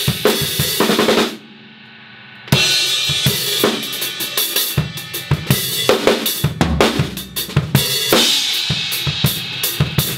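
Progressive metal drum kit played hard, with bass drum, snare and cymbals over held pitched guitar and bass notes. About a second in, the drums stop dead for about a second, leaving only a quieter held note, then the full playing comes back in.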